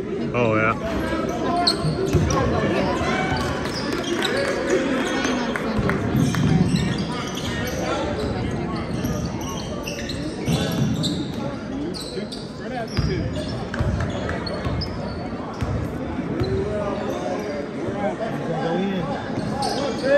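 Crowd chatter echoing through a large gymnasium, with a basketball bouncing on the hardwood court.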